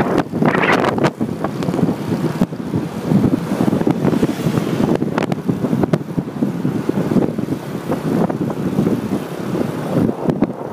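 Wind buffeting the microphone of a moving vehicle, with road and engine noise underneath; a rough, uneven rush that rises and falls in gusts.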